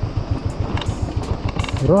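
Royal Enfield single-cylinder motorcycle engine running at low revs on a rough dirt road, its exhaust beats coming in a steady, even rhythm of about ten a second.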